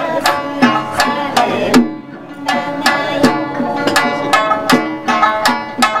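Amami sanshin, the snakeskin-covered three-string lute, plucked in a brisk rhythm, with strokes on a small laced chijin hand drum. The playing eases briefly about two seconds in, then carries on.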